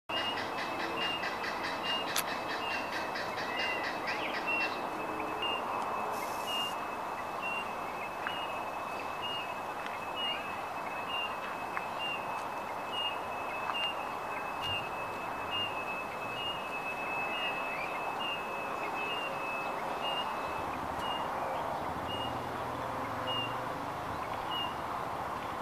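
Birds chirping over a steady outdoor hiss. A short high chirp repeats evenly, a little more than once a second, and a fast trill sounds in the first few seconds.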